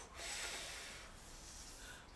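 A soft, breathy puff of air that fades away over about a second: a child blowing at a lit birthday candle.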